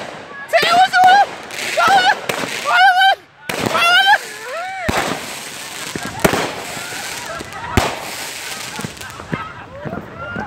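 A ground firework going off on the pavement: high, wavering shrieks over a hiss for the first few seconds, then a steady hiss broken by several sharp pops in the second half.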